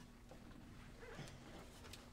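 Near silence: room tone with a faint steady hum, and a few faint soft movement sounds and a small click in the second second as people shift and sit down.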